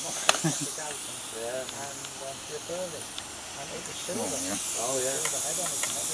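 Steady steam hiss from a live-steam model Ivatt 2-6-2 tank locomotive, getting a little louder about four seconds in. A single sharp metallic click comes just after the start.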